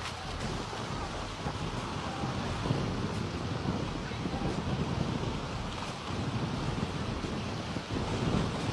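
Wind rumbling on the microphone over the steady wash of calm sea water at the shoreline.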